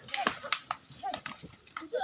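Irregular sharp knocks of two bulls' horns clashing as they lock heads and push, with men's short shouted calls between them.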